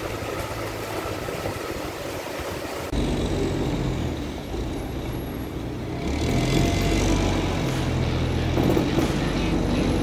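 Even rushing noise, then about three seconds in a heavy truck's diesel engine is heard running slowly close by: a deep steady drone that grows louder about six seconds in, as it hauls a Caterpillar 395 excavator on a lowboy trailer.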